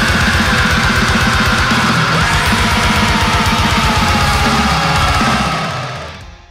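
Deathcore heavy metal with fast drumming and distorted guitars. A high lead note slides slowly down in pitch, and the music fades out near the end.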